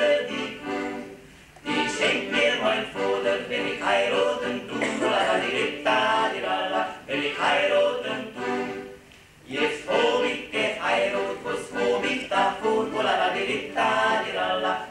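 Male vocal quartet singing in close harmony with an accordion accompanying, with two short breaks between phrases, about a second in and about nine seconds in.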